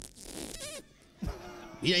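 A man making a zipper-opening sound with his mouth into a microphone: a short rasping 'zzzip', under a second long.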